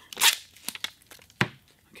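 A strip of paper-backed G-Tape 3045 flashing tape being ripped off its roll: a brief tearing sound about a quarter second in, then a single sharp click a little past the middle.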